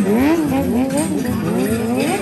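Motorcycle engines revving, their pitch swinging up and down about twice a second as the throttle is worked.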